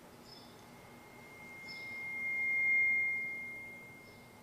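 A single high, pure tone that swells up for about two seconds and then fades away.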